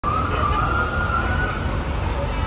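Outdoor ambience: a steady low rumble with a single high tone that glides slowly upward for about a second and a half, then fades.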